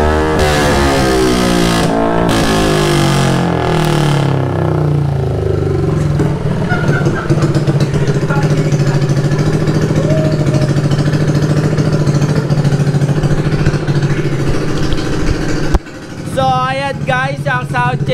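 Yamaha Aerox 155 scooter's single-cylinder engine breathing through an aftermarket SC Project exhaust: revs falling back after a blip of the throttle over the first few seconds, then a steady idle. Near the end the engine sound drops away abruptly and a man starts talking.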